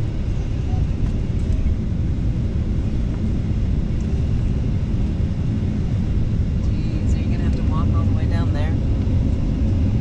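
Steady low rumble of an airliner's engines and cabin air heard from inside the passenger cabin, with faint voices in the last few seconds.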